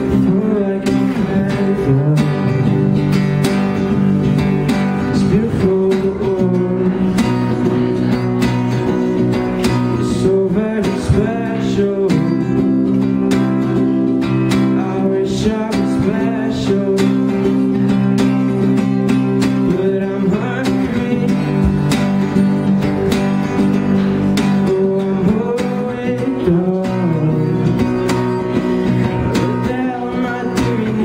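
A man singing while strumming chords on an acoustic guitar, a steady, continuous live performance.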